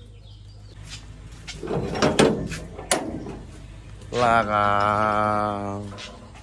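A man's voice holding one long, drawn-out note at a nearly steady low pitch for almost two seconds in the second half. Before it, some knocks and handling noise.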